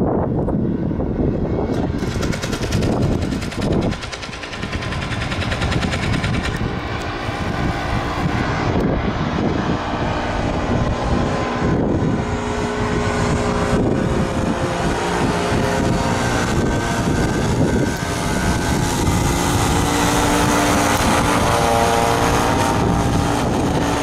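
Paramotor (powered paraglider) engine and caged propeller droning overhead in a steady, pitched hum. It grows louder through the second half as the craft passes close, and the pitch shifts in the last few seconds.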